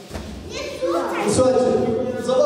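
Voices in a large hall: speech mixed with children's voices, with one high rising voice about a second and a half in.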